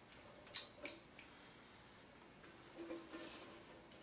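Near silence, with a few faint clicks in the first second from a cheesecloth bundle and metal bowl being handled as infused coconut oil is squeezed out.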